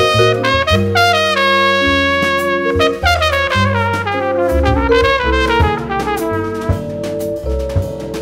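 Small jazz group playing a slow ballad: a horn carries a wavering melodic line over held bass notes, with drum kit underneath.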